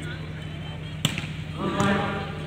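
A volleyball struck hard by hand: one sharp smack about a second in, followed by shouting voices near the end.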